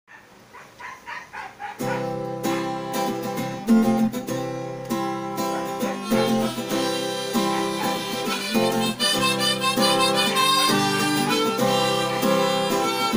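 Harmonica playing held chords and a melody over strummed acoustic guitar. It starts faintly, then comes in fully about two seconds in.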